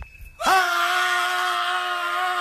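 Men's voices letting out one long yell, held at a steady pitch, starting about half a second in.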